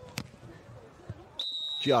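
A beach volleyball struck by a hand with one sharp slap, then a little over a second later a referee's whistle blowing one steady high note that ends the rally.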